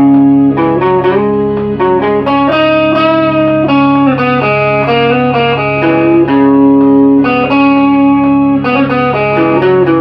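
Electric guitar playing a melodic line of held, sustained notes that step up and down in pitch, over a steady low drone note.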